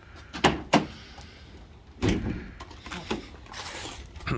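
Ford F-150 tailgate being opened: two sharp latch clicks, then about two seconds in a louder clunk with a few smaller knocks as the tailgate comes down.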